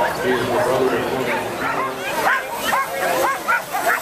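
Sled dogs in harness barking and yipping, many short overlapping barks that come thicker in the second half, over crowd chatter.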